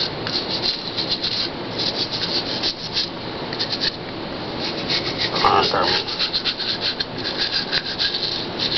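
A brush scrubbing in quick, uneven back-and-forth strokes, bristles rasping against a hard surface while dentures are being cleaned.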